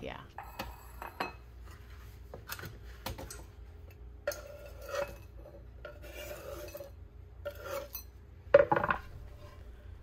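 Kitchen knife chopping crisp cooked bacon on a bamboo cutting board: scattered taps and knocks of the blade on the wood, with one louder knock about eight and a half seconds in.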